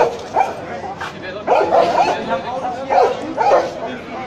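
Leashed police dog barking loudly in short, sharp barks: one right at the start, a quick run of several about a second and a half in, and two more near the end.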